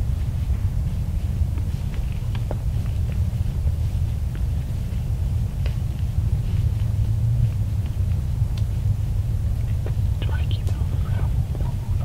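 Soft whispering, clearest about ten seconds in, over a steady low rumble.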